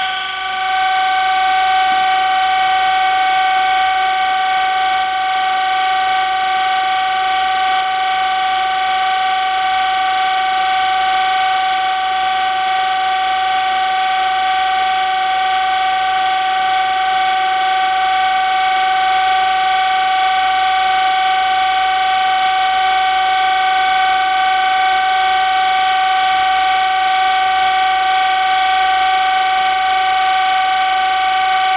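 Surface grinder running with a steady high whine while its wheel grinds the diameter of a steel edge finder turned in a Harig Grind-all spin fixture. A finer, hissing grinding sound joins the whine from about four seconds in as the wheel cuts the part.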